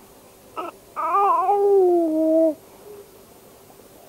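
A baby vocalizing: a brief sound, then one drawn-out whiny cry about a second and a half long that drops slightly in pitch.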